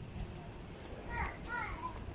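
A young child's voice calling out briefly, high-pitched with a bending pitch, about a second in.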